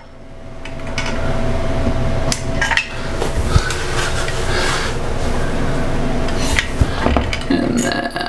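A metal caulking gun clicking and clanking as its trigger is squeezed and released, with several sharp knocks, over a steady rushing background noise.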